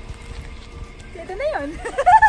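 Low rumble of wind on the microphone, then, a little over a second in, a woman's high voice in rising and falling squeals of laughter.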